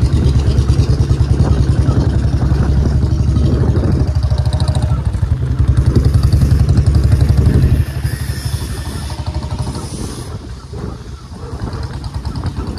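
Motorcycle engine running with a fast, even pulse while the bike is ridden along; about eight seconds in the throttle eases and it gets quieter.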